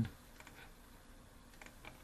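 A few faint, short clicks of a computer mouse as a CAD program is operated: about half a second in, then twice in quick succession near the end.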